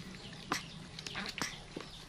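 A few short animal calls: one about half a second in, then a quick pair around a second and a half in.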